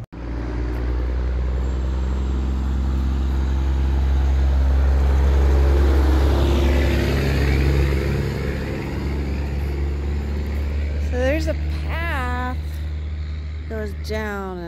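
A motor vehicle passing on the road, its engine rumble building to its loudest about halfway through and then fading.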